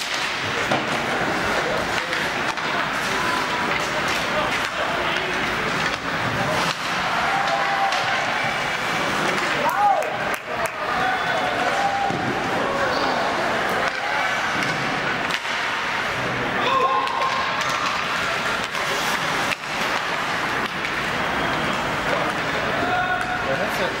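Ice hockey rink during play: spectators' indistinct shouts and calls over a steady arena din. A few sharp knocks from sticks, puck or boards stand out.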